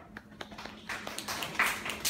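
A small audience clapping: a few scattered claps at first that build into denser applause about a second in.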